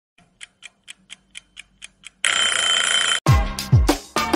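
An intro sound effect: about eight quiet, even ticks at roughly four a second, like a clock, then a loud ringing hiss for about a second that cuts off abruptly. Electronic dance music with a deep, booming kick drum starts near the end.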